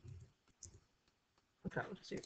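A few quiet clicks from a computer keyboard and mouse in the first second, as a word is typed and text is selected.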